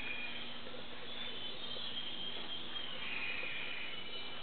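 Dawn chorus of many birds: a dense, steady layer of overlapping high chirps and whistles.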